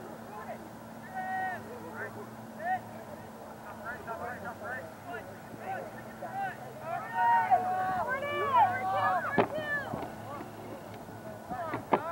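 Distant voices of lacrosse players and spectators calling and shouting across the field, growing louder and busier after about seven seconds. A steady low hum runs underneath, and there is one sharp knock about nine seconds in.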